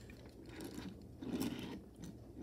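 A 1:64 diecast stock car being turned and pushed by hand on a tabletop: faint scraping and rolling of its small wheels and body on the surface, a little louder about a second and a half in.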